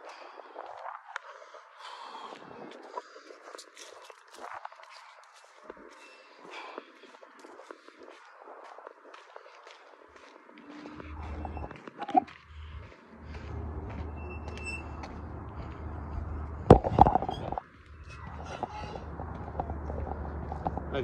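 Footsteps and phone handling noise as the phone is carried while walking over concrete and dirt, with scattered light clicks. A steady low rumble sets in about halfway through, and a single sharp knock, the loudest sound, comes near the end.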